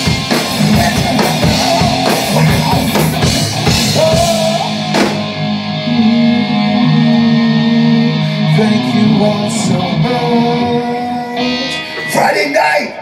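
Live rock band with electric guitar and drum kit playing loudly: fast drumming under distorted guitar for the first five seconds, then held, ringing chords that stop sharply near the end as the song finishes.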